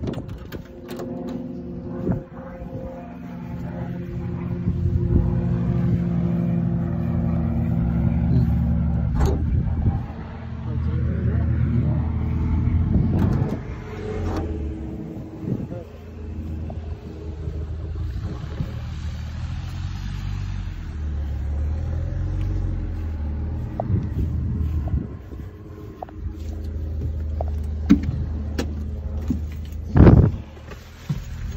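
Light aircraft piston engine running, its speed and loudness shifting several times, with scattered knocks from handling.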